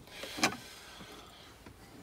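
A kitchen knife knocking once sharply about half a second in, as a slice of cake is cut off on a chopping board and moved onto a plate. A fainter light click follows near the end.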